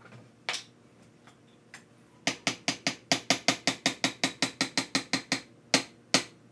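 A spoon knocked rapidly against the rim of a plastic blender cup to shake peanut butter off into it: a quick, even run of about sixteen sharp knocks, roughly five a second, then two more knocks near the end.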